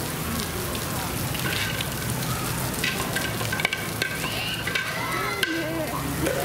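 Steady rushing and splashing of water pouring into a pool, with a few faint clicks.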